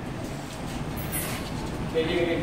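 Steady outdoor background noise: an even hiss and rumble of open-air ambience, such as a phone microphone picks up by a road.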